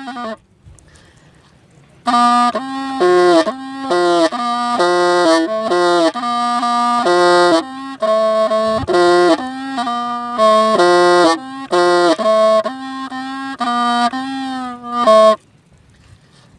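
Hmong bamboo pipe (raj) playing a slow, plaintive melody of held and bending notes. It comes in about two seconds in after a short pause and breaks off just before the end.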